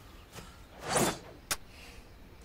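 A sword swung through the air in a swelling whoosh that peaks about a second in, followed half a second later by one sharp click.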